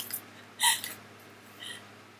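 Laughter trailing off in three short breathy gasps; the middle one is the loudest and the last is faint.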